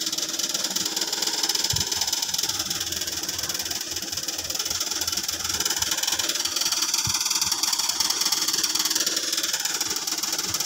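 A steady, loud mechanical hiss with a buzz in it, running without a break, with a couple of faint low thumps beneath it.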